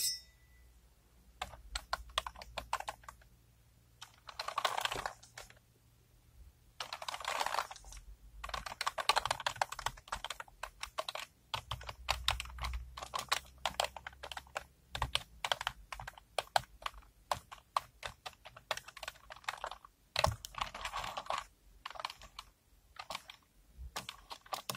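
Fingers tapping and pressing the keys of a laptop keyboard in quick runs of clicks broken by short pauses. The clicking turns almost continuous from about eight seconds in.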